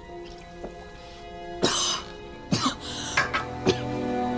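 Film soundtrack: soft sustained music, then a loud cough about a second and a half in, followed by several shorter coughing or throat-clearing sounds.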